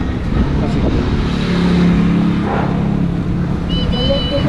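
A motor vehicle's engine running on the street, swelling to its loudest around the middle and then fading, over a low wind rumble on the microphone.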